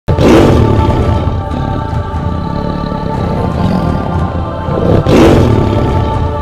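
Big-cat roar sound effect for an animated tiger, heard twice, right at the start and again about five seconds in, over a dramatic music bed with sustained tones.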